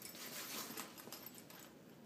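Faint rustling and scratching of a fabric money belt being spread open, a hand reaching into its zippered pocket.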